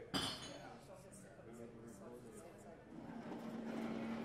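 A single sharp clink, like glass being struck, about a tenth of a second in, ringing briefly, over a low murmur of audience chatter. A steady low note sounds near the end.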